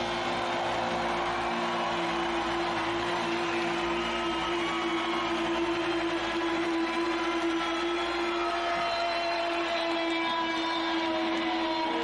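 Live rock gig sound: a single steady note held throughout over a continuous noisy wash, with no beat and no singing.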